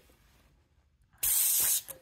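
Near silence, then, a little past the middle, a short hiss of air lasting about half a second: air escaping at the tire's valve stem as the portable tire inflator's hose connector is pressed on or pulled off to read the pressure.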